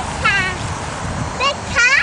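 A toddler's high-pitched squeals or babbles: three short, wavering calls, one about a quarter second in and two close together near the end, the last the loudest.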